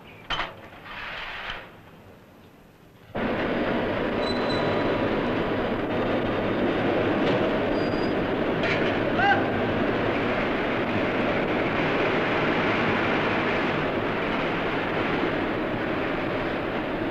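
A few light metallic clatters, then, about three seconds in, a loud, steady industrial noise of a hot forge shop starts suddenly and holds without distinct hammer blows.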